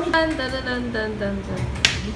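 People's voices at a dinner table, with one sharp click near the end.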